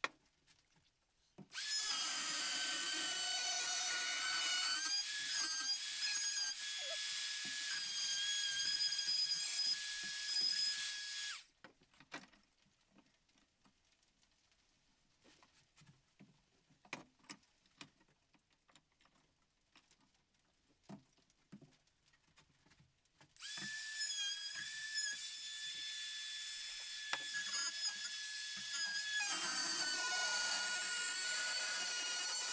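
Ryobi trim router cutting a round-over on the edge of an aluminium bar: a high-pitched motor whine with a rough cutting edge, in two passes of about ten seconds and seven seconds. Between the passes there are only light clicks and handling taps. The pitch sags slightly under load, most clearly near the end.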